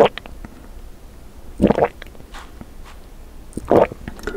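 Close-miked gulps of a green drink being swallowed: two loud gulps about two seconds apart, with faint wet mouth clicks between.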